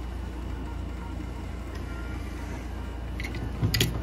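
Quiet background music with a steady low bass. Near the end come a few short clicks and knocks as a die-cast toy car is handled and set down on a paper map.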